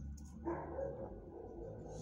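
A dog barking, starting suddenly about half a second in and fading over about a second.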